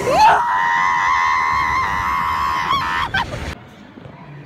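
A woman screaming during the drop of a free-fall ride: one long, high scream that rises sharply at the start, is held at a steady, slightly wavering pitch for about three seconds, and cuts off abruptly.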